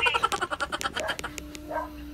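A man's loud, high-pitched burst of laughter in rapid ha-ha pulses, dying away about a second in.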